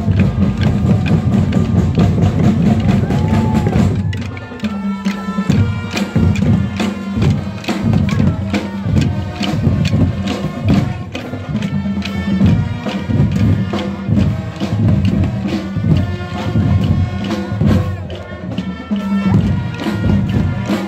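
Music carried by drums and percussion, playing a steady rhythm of drum strokes. About four seconds in, a dense opening passage gives way to a sparser, evenly spaced beat.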